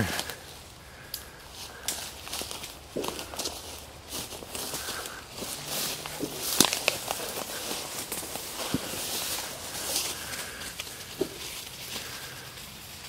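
Footsteps through woodland undergrowth: ferns, grass and brush swishing against the legs and twigs crackling underfoot at an irregular pace.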